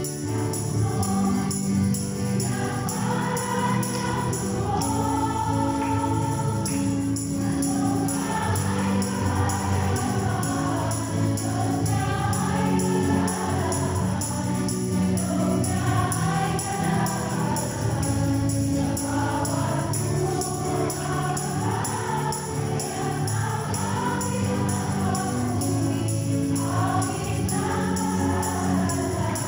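Church choir singing a Tagalog hymn with instrumental accompaniment and a steady rhythmic beat.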